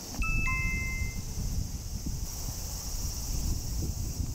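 A two-note descending chime sound effect, a 'ding-dong', about a quarter-second apart in the first second; the second, lower note is louder and rings a little longer.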